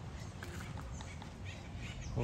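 Quiet outdoor background noise: a steady low rumble with a few faint, short high ticks.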